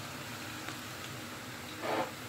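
Steady sizzle of potato strips frying in vegetable oil in a frying pan, over the running fan of a kitchen range hood, with a short louder rush of noise near the end.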